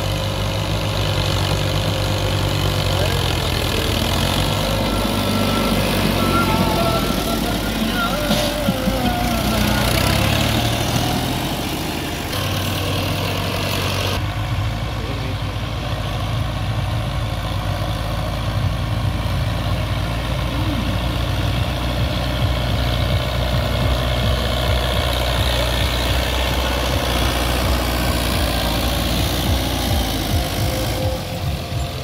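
Tractor diesel engines running steadily under load as the tractors drag rear scraper blades full of soil across the field. The result is a continuous low engine drone.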